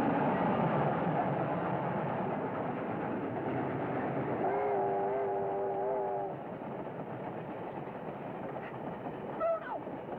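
A train rushing past: a loud, steady rushing clatter with a whistle held for nearly two seconds about halfway through, after which the train noise drops away. It plays on an old, dull film soundtrack with nothing above the low treble.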